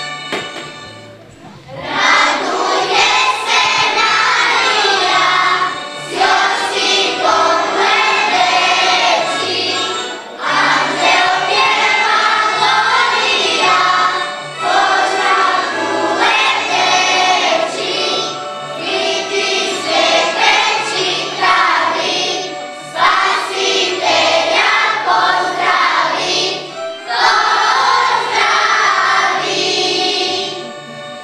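Children's choir singing a song with instrumental accompaniment and a steady stepping bass line; the voices come in about two seconds in, after a short instrumental lead-in.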